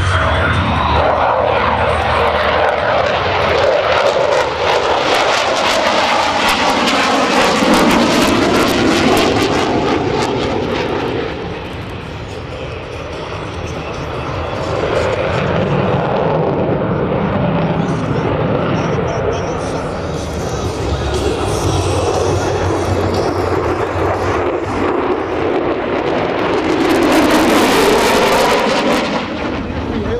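Lockheed Martin F-22 Raptor's twin Pratt & Whitney F119 turbofan engines, loud jet noise during an aerobatic display. The pitch slides down as the jet passes, dips to a quieter spell about twelve seconds in, and swells again with a hissing peak near the end.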